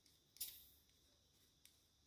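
Near silence: room tone, with one brief faint sound about half a second in.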